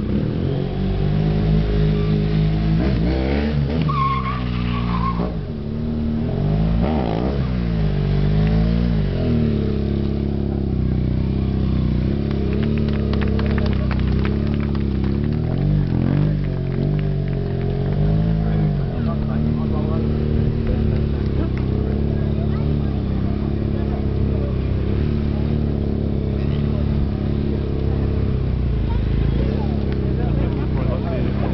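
Sports motorcycle engine revving up and down in repeated swells during wheelie stunt riding, several in the first nine seconds and again around sixteen to nineteen seconds, then holding a steadier note.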